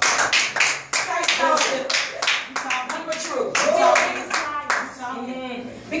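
Hands clapping in a steady rhythm, about three to four claps a second, with voices speaking over the clapping.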